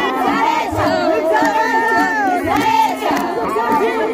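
A crowd of women singing and calling out together, with high, rapidly trilling ululation rising above the voices and hands clapping.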